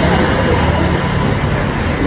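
Road traffic: a motor vehicle's engine running with a steady low rumble.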